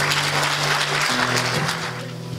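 Congregation applauding over the band's last held chord of a worship song, played on electric-acoustic guitar and keyboard. The chord shifts about a second in, and the clapping thins out near the end.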